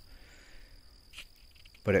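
Quiet outdoor background with a faint, steady high-pitched whine, and a brief soft sound about a second in.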